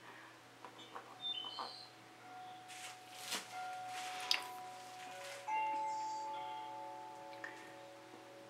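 Soft background music of slow, held chime-like notes, with a new higher note coming in about halfway through. A few light taps and clicks sound around three to four seconds in.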